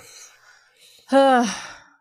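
A person sighing aloud: faint breathing, then one voiced sigh falling in pitch about a second in.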